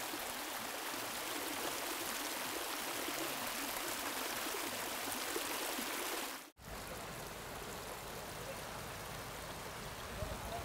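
Hot spring water boiling up and splashing in a steaming pool, a steady rushing hiss with faint gurgling. About six and a half seconds in it cuts off, and a lower, fuller steady rushing noise follows.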